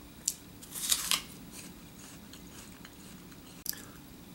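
A bite into a crisp Grapple apple: a sharp crunch about a second in, then quiet chewing with a few small clicks and one more sharp click near the end.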